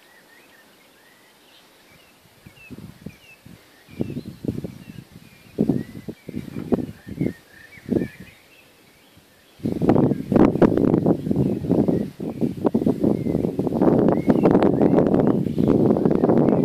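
Birds chirping faintly, then wind buffeting the microphone in irregular gusts from a few seconds in, turning continuous and loud about ten seconds in and covering the birdsong.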